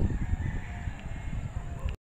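A faint, drawn-out animal call over a low rumbling background.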